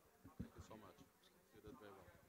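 Near silence with faint, indistinct voices murmuring.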